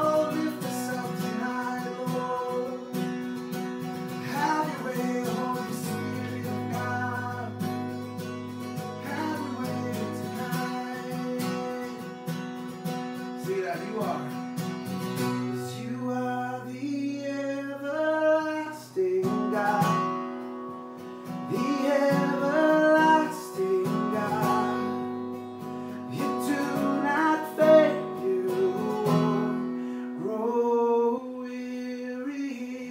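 Acoustic guitar strummed with a man singing a slow worship song over it.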